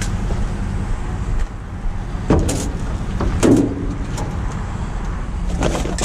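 A vehicle engine idling steadily with a low hum. There are short knocks from handled objects about two seconds in, again about three and a half seconds in, and near the end.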